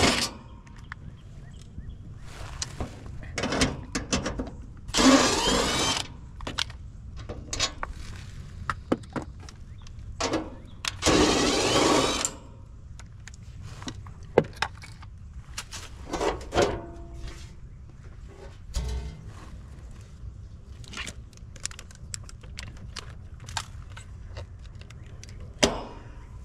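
Hands working on equipment: scattered clicks and knocks, with loud rasping bursts about five seconds in and again from about ten to twelve seconds, over a steady low rumble.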